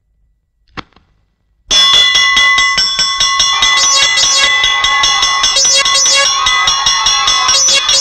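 One sharp tap about a second in, then loud, continuous clanging of a metal bell struck rapidly over and over, its ringing tones held throughout.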